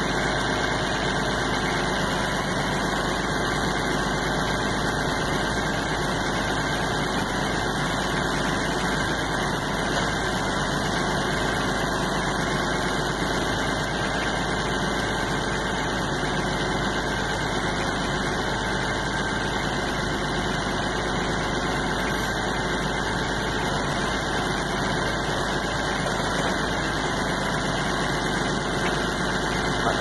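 Tractor engine running steadily at an even pitch and level throughout.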